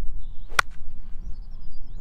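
A golf iron striking the ball on a full swing: one sharp crack about half a second in, over a steady low rumble.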